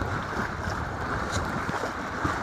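Water rushing and splashing along the hull of a Tinker Tramp inflatable sailing dinghy under way, with wind buffeting the microphone.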